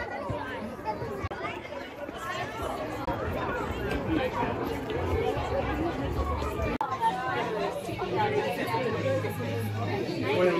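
Chatter of many people talking at once around them, no single voice standing out, with a brief gap about seven seconds in.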